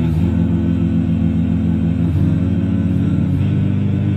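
Several amplified male voices singing an a cappella metal intro, imitating guitar parts with a low, sustained harmonized chord and a pulsing inner line. The chord shifts about two seconds in and again near three seconds.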